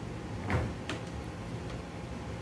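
Two short clicks, about half a second in and again a moment later, as data cable connectors are handled and plugged in inside a server chassis.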